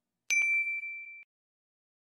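Notification-bell 'ding' sound effect: a single bright chime about a third of a second in, ringing for about a second and then cutting off.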